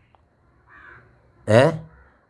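A pause in a man's speech with a faint, short harsh call about half a second in, then the man voices one loud short syllable near the end.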